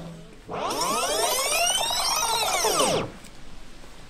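The dance music cuts off, and a synthesized sound effect follows: a sweep whose pitch rises and then falls over about two and a half seconds, as a transition between tracks of a dance mix.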